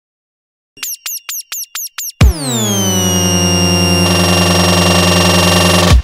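Electronic dance music intro: after a moment of silence, a run of short falling synth zaps about four a second, then a loud hit whose pitch sweeps down and settles into a long held synth chord.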